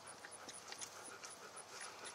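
Faint hoofbeats of a ridden horse on grass: soft, irregular ticks over a steady hiss.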